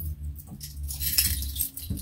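Light jingling and clinking of a chunky metal chain necklace being picked up and handled.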